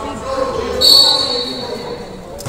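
A referee's whistle: one short blast of under a second, a little before the middle, over the chatter of people in a gym.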